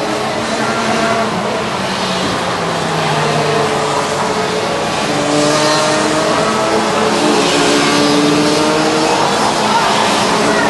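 Several 125cc two-stroke Rotax Junior Max kart engines buzzing as a group of racing karts goes through the corners, their overlapping notes sliding down and rising again with the throttle. The sound grows a little louder about halfway.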